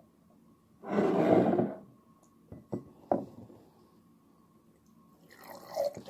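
Milk poured from a small carton into a cup: a splash about a second long, followed by a few light knocks of the carton or cup.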